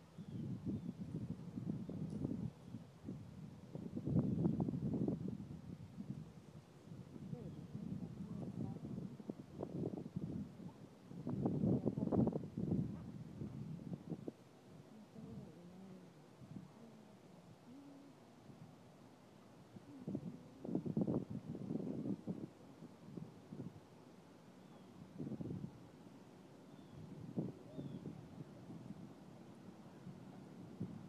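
Indistinct, low voice sounds with no clear words, coming in irregular bursts every few seconds, the loudest around 4, 12 and 21 seconds in.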